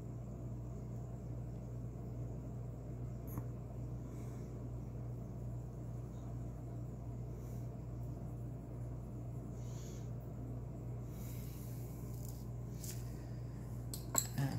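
Coloured pencil scratching lightly on paper in a few short, faint strokes over a steady low hum.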